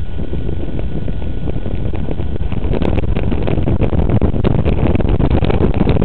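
Wind rushing over a mountain bike's wheel-mounted camera, with the knobby front tyre crunching and rattling over a gravel dirt track. About halfway through the crunching and clicking grows louder and busier.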